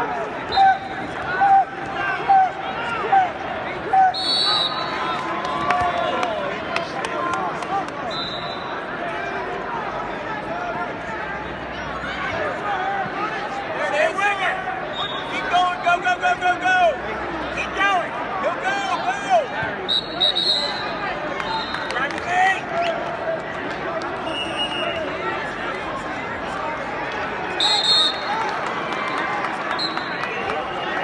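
Arena crowd and coaches shouting and calling during a wrestling match, a steady babble of many voices in a large hall. Short high whistle blasts cut through a few times, the loudest near the end.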